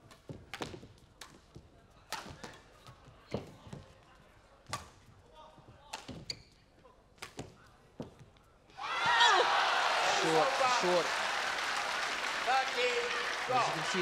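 Badminton rally: crisp racquet strikes on the shuttlecock, about one a second, in a large hall. About nine seconds in, the crowd breaks into loud cheering and shouting as the point is won.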